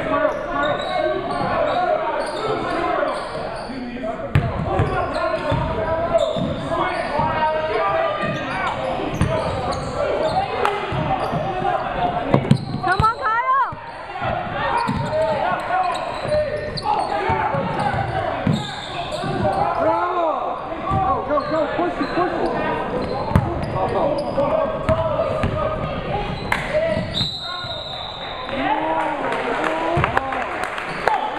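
Basketball being dribbled and bounced on a hardwood gym floor during a game, with players' and spectators' voices echoing around a large hall. There is a brief steady high-pitched tone near the end, as play stops.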